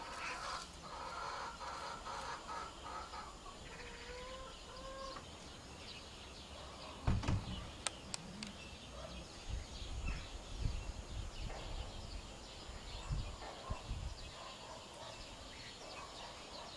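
Faint bird calls, with one drawn-out rising call about four seconds in. From about seven seconds on, a series of low thumps and rumbles.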